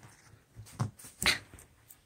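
A domestic cat making two short calls about half a second apart, the second louder.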